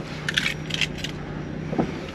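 A bunch of keys jingling in a hand: two short bursts of metallic clinking in the first second, over a steady low hum.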